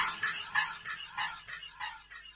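The very end of a recorded pop-rock song: after the band stops, a short sound repeats about four or five times a second, growing fainter until it dies away.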